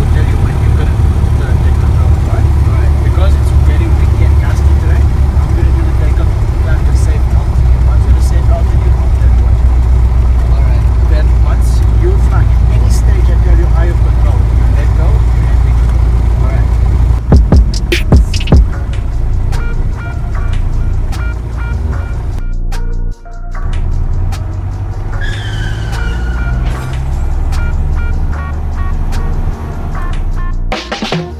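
Steady, loud low drone of a small propeller plane's engine and airflow heard inside the cockpit. A few sharp knocks come about 17 seconds in, after which background music with a repeating synth pattern takes over.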